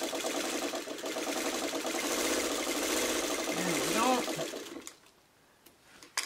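Sewing machine running at a steady speed, stitching fabric pieces together, then stopping about five seconds in.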